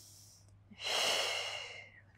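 A woman's paced breath during a held stretch, close on the microphone: one long breath starting a little under a second in, swelling and then fading over about a second.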